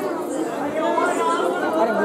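Speech: a man's voice talking into a handheld microphone.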